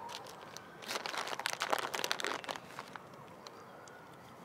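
Crinkling and rustling of a plastic bag of chocolate sweets being handled. It is a dense burst of crackles lasting about two seconds, starting about a second in.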